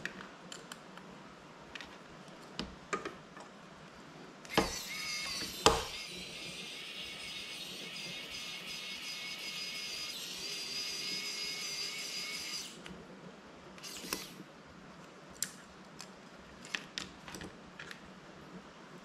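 A small power tool whirring steadily for about eight seconds and then stopping abruptly, its sound a high hiss with a few fixed whining tones. It starts just after two sharp knocks, and light clicks of small parts on the desk are heard before and after.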